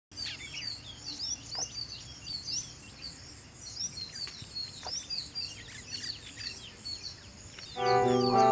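Many small birds chirping and calling at once, short quick notes overlapping throughout. Music starts just before the end.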